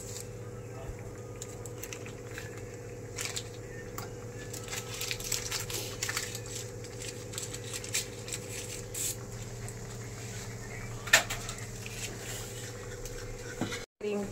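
Thick creamy gravy simmering in a kadhai on a gas burner, with scattered small pops and splutters over a steady low hum.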